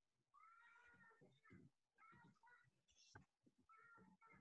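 Near silence, with faint repeated cat meows: about six short calls, each rising and falling in pitch.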